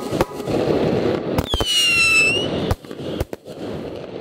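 Fireworks going off overhead: a series of sharp bangs over steady crackling, with a whistling firework about a second and a half in that drops in pitch and then turns slightly upward.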